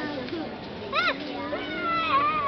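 Background chatter of spectators, with a short high-pitched child's squeal about a second in and a long high-pitched call near the end.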